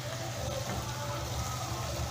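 Masala frying with a faint sizzle in a steel kadai as mashed boiled potato is tipped in, over a steady low hum.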